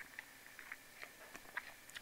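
Near silence: faint room hiss with a few faint, brief ticks spread through the pause.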